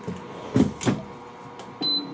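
Two short knocks from a shirt being handled on a heat press, then near the end a high electronic beep from the press begins.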